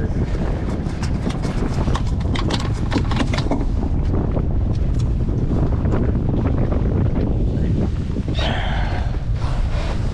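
Wind buffeting the microphone, with a quick run of knocks and taps over the first few seconds as a landed striped bass and the tackle are handled on the boat's fiberglass deck.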